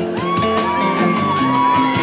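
Live band of acoustic guitar, electric guitar and drum kit playing between sung lines, with cymbals ticking steadily. A long high note rises over the music a moment in and is held for over a second.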